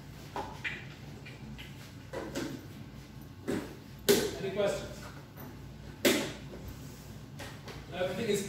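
Plastic honey pails being handled at a filling tap, with a few sudden knocks. The two loudest come about four and six seconds in.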